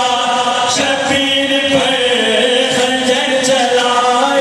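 Noha recitation: a man's voice chanting a slow Shia lament into a microphone, holding long notes that glide gently in pitch.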